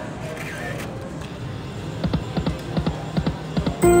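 Video slot machine game sounds: a steady electronic music bed, then a run of short plinking tones from about halfway through as the reels land. A loud ringing chime near the end marks a small win.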